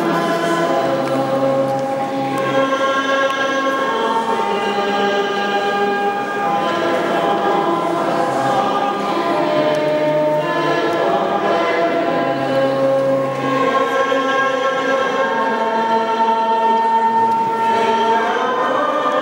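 A group of voices singing a slow church hymn in long held notes, with the reverberation of a church nave.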